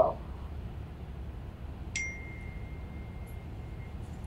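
A single ding about two seconds in: a sharp strike followed by one clear high tone that rings on steadily, heard over a low room hum.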